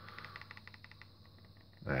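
A run of faint, rapid clicks, about a dozen a second, lasting about a second, over a low steady hum.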